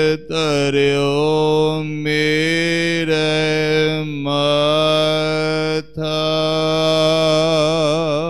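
A man chanting Gurbani (the Hukamnama) in a slow, melodic recitation. He holds long notes, with brief breaths about every two seconds, and his last note wavers near the end.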